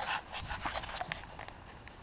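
Faint breathing and light footsteps of a person walking, with a few small clicks.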